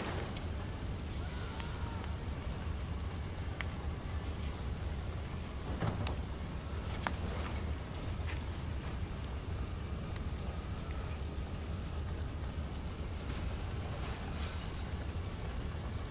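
Outdoor background noise: a steady low rumble under a faint hiss, with a few faint ticks.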